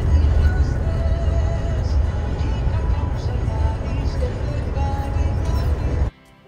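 Steady low engine and road rumble heard from inside a moving bus, with faint music over it.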